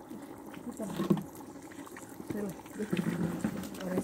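Low, indistinct voices over a wooden paddle stirring thick mole paste as it fries in lard in a glazed clay cazuela, with a few soft knocks.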